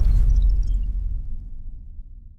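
Deep rumbling tail of a logo-intro sound effect, left over from a whoosh-and-boom hit, fading away steadily over the two seconds.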